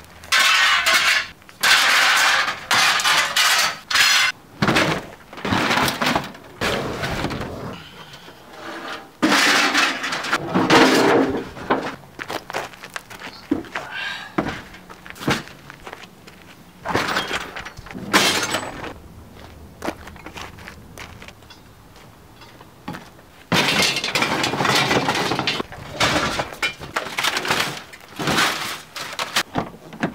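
Scrap metal pieces clattering and clanking in plastic buckets and against each other as the buckets are lifted and set into a car's cargo area, in irregular bursts with short pauses and a quieter spell about two-thirds of the way through.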